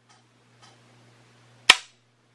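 A single sharp metallic click from the AK rifle's newly installed ALG AKT-EL trigger group, about three quarters of the way in, as the trigger is worked to show its reset: a little, short reset.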